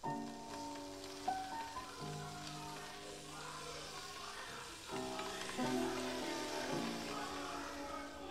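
Effervescent tablets fizzing in a paper cup of water, a fine steady hiss under background music.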